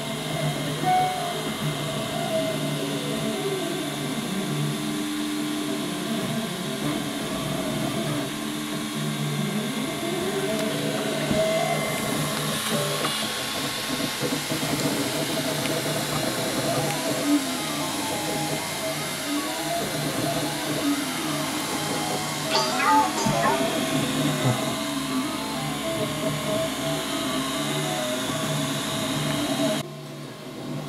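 Ultimaker 2+ 3D printer at work: its stepper motors whine in tones that rise and fall over and over as the print head speeds up, slows and changes direction, over a steady hum from the cooling fans.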